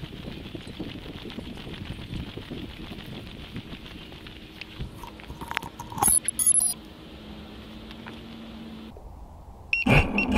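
Onboard audio of a small FPV racing quadcopter: a steady rush of propeller wash and wind as it flies low over grass. After it comes down in the grass, a short run of high electronic beeps sounds about six seconds in. Near the end its motors start up again with a sudden louder whirr.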